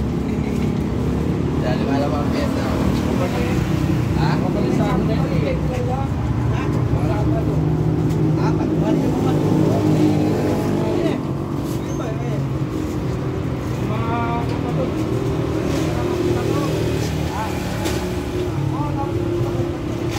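An engine running steadily with a low rumble that shifts in pitch now and then, with people talking over it.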